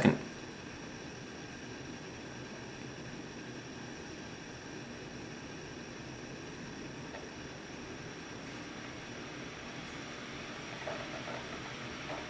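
Steady low hiss of room tone with a faint high whine, and no distinct event.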